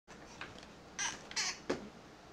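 A young infant's short, high-pitched squeaks about a second in, then a squeal that slides down sharply in pitch near the end.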